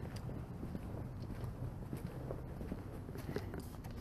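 Faint footsteps of work boots on concrete, with small scattered scuffs and clicks.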